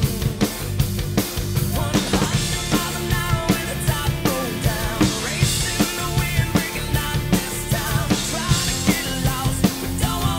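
A rock drum kit, a custom Risen kit with Sabian cymbals, played live over a rock song's backing track: a steady beat of kick, snare and cymbal hits under the band's pitched parts, with no singing.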